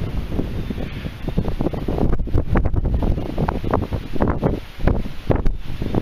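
Strong wind buffeting the microphone: a continuous low rumble with sharp gusts through the middle.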